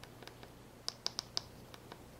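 Button presses on a Garmin GPSMap 66st handheld GPS: faint, sharp clicks, scattered at first, then a quick run of four around the middle.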